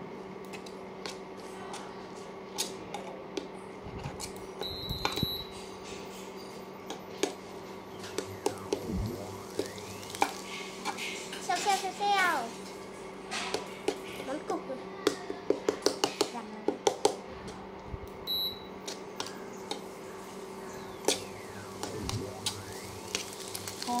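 A metal utensil scraping and clinking against a small stainless steel pot as eggs are stirred and scrambled, with a quick run of rapid taps a little past the middle. A steady low hum runs underneath.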